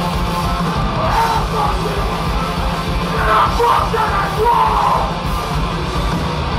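A hardcore punk band playing live through a club PA, with loud distorted guitars, bass and drums and a vocalist yelling over them from about a second in until near the end.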